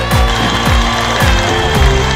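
ATM cash dispenser counting out banknotes, a rapid mechanical clicking, under background music with a steady beat.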